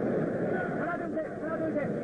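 Boxing arena crowd noise: a steady hubbub of many voices with a few individual shouts standing out.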